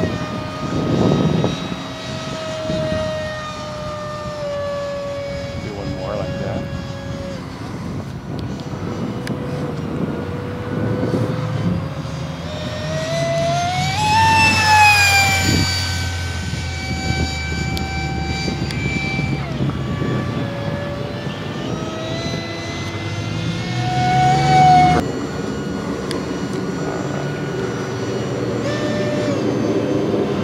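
Electric ducted fan of a Freewing F-35 radio-controlled jet whining in flight, its pitch wandering with the throttle. It climbs to a loud peak about halfway through, then drops, and swells again near the end before cutting off suddenly. Gusty wind rumbles on the microphone underneath.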